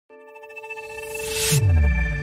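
Intro sound design: a held synth chord under a rising whoosh that grows steadily louder, then cuts off about one and a half seconds in and drops into a deep, falling boom.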